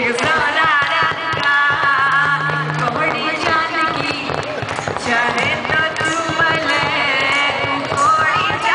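A woman singing live into a handheld microphone over amplified backing music with a steady beat, the voice holding long wavering notes through the concert PA.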